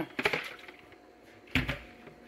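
A few brief rattles from a half-gallon plastic drink jug being shaken with a block of ice inside. Then, about a second and a half in, a single solid thud as the full jug is set down on the counter.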